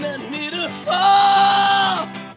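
A man singing to his own acoustic guitar, his voice sliding through a short phrase and then holding one long, loud note from about a second in.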